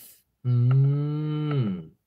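A man's drawn-out low hum, 'mmm', held at a steady pitch for over a second and falling off at the end, as if thinking something over.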